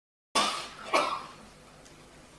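A person coughing twice close to a microphone, the two coughs about half a second apart. The sound cuts in abruptly out of dead silence just as the first cough starts, as when a microphone is switched on.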